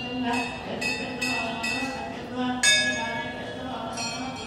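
A man chanting in a steady voice, with several sharp metallic rings over it, the loudest about two and a half seconds in.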